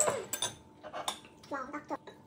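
Metal chopsticks clinking against the inside of a stainless steel pot of instant ramen as noodles are lifted out: a few sharp clinks.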